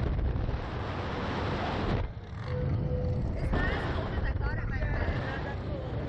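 Wind buffeting the microphone of a camera mounted on a Slingshot ride capsule as it swings through the air: a heavy, steady rush with a brief dip about two seconds in.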